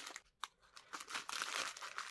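Thin clear plastic bag crinkling as it is handled. It goes briefly quiet with a single click a little under half a second in, then rustles again as it is picked up.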